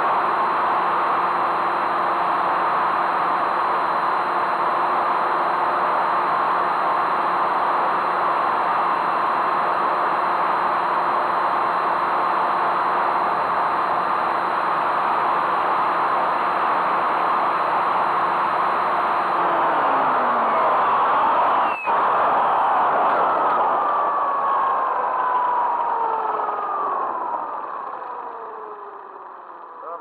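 Mikado Logo 600SX electric RC helicopter's motor and main rotor heard from an onboard camera, holding a steady whine at flying headspeed. From about twenty seconds in the pitch falls and the sound fades as the rotor spools down, with one sharp click a couple of seconds into the wind-down.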